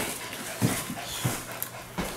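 Pomeranian puppy panting, with two or three short low sounds from it about halfway through.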